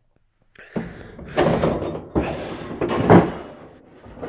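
A perforated stainless-steel screen is lifted up from the floor of a plastic tank, scraping and rattling against the tank. There is a sharp knock about three seconds in.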